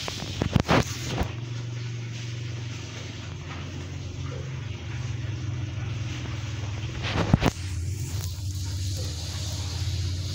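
A steady low motor hum, with a few sharp knocks about half a second in and again about seven seconds in.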